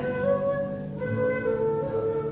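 Live music: an acoustic guitar accompanying a slow melody of long held notes, the melody moving to a new note about a second in.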